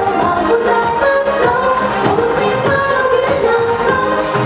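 Cantopop song playing: a sung melody over a pop backing track.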